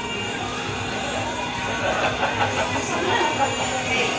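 Background music mixed with a steady babble of crowd chatter in a busy room.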